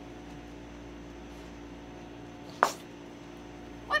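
A single short yip from a small dog, a Maltipoo, over a steady low hum in the room.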